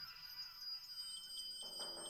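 Electronic accompaniment of a timpani solo piece holding faint high steady tones. About one and a half seconds in, a flickering synthesized texture with a low held tone comes in. No drum strokes sound.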